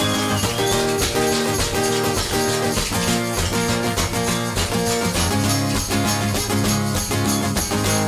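Acoustic guitar strumming a steady rhythm with shaken maracas and a tambourine playing along, an instrumental percussion break with no singing.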